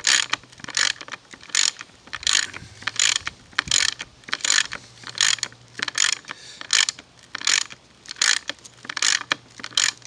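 Ratchet wrench clicking in short strokes, about two to three clicks a second, as a bolt is tightened into an epoxied T-nut to draw it snug.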